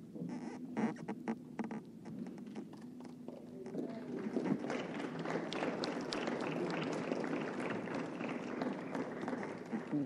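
Congregation applauding. A few scattered claps and knocks come first, then the clapping swells into steady applause about four seconds in.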